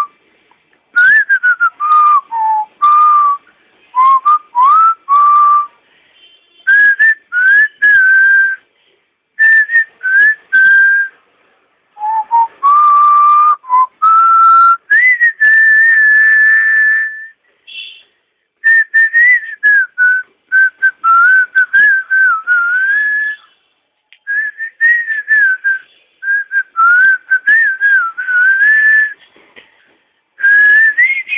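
A person whistling a melody in short phrases with brief pauses between them, including one long held note about halfway through.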